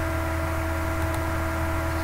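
Steady electrical hum with a few fixed tones over a hiss, the background noise of a desk microphone recording. A faint computer-mouse click comes about halfway through.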